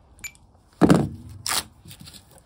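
A plastic grocery crate being handled on van shelving: a loud knock and scrape about a second in, then a shorter, higher scrape just after.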